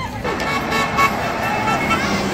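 A horn sounding a steady held note, starting about a quarter second in, over the voices of a crowd.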